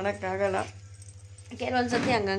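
A woman talking, with a pause of about a second in the middle, over a steady low hum.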